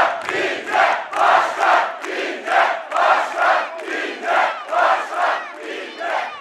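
A large rally crowd chanting in unison, a loud rhythmic chant of about two to three beats a second.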